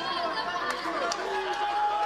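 Indistinct chatter of a few voices in a large arena hall, faint and steady under no close speaker.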